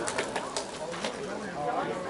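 Indistinct talk and chatter of several people, with a few faint clicks in the first half second.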